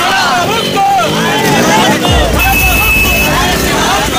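A group of protesters shouting slogans together, many voices overlapping. About two seconds in a low rumble comes in under the voices, and a steady high tone sounds for about a second.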